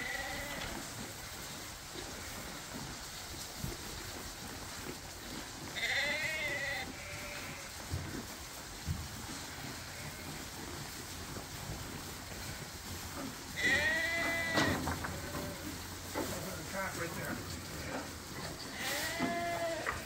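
Sheep bleating at the feeders, three separate calls several seconds apart: one about six seconds in, one around fourteen seconds and one near the end.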